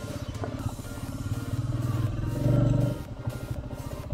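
Background music over a motorcycle engine running at road speed. The engine sound swells louder for about half a second a little past the middle, then drops back.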